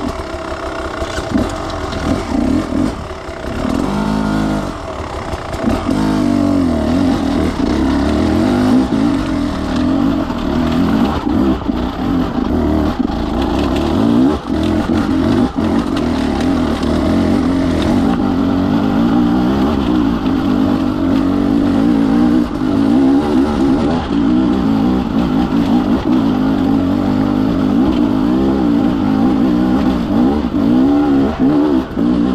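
Enduro dirt bike engine working hard up a steep rocky climb, revs rising and falling over the first few seconds, then held steadier under load. Stones and the chassis clatter now and then beneath it.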